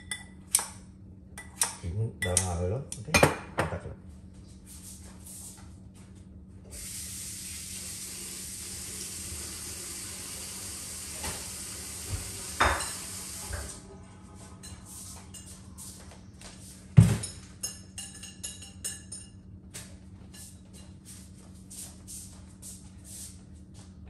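Kitchen clatter of bowls, pots and utensils: a run of sharp clinks and clicks, a steady hiss for about seven seconds in the middle that cuts off suddenly, then one loud knock and more light clinks.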